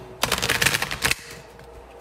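A deck of tarot cards being shuffled: a rapid flutter of card edges clicking together for about a second, beginning just after the start.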